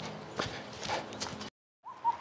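Footsteps in dry fallen leaves: a few soft, uneven steps. About three quarters of the way in the sound cuts off to silence.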